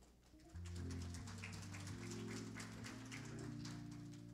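Organ playing soft, sustained low chords that start about half a second in and shift every second or so, with light rapid ticks above them.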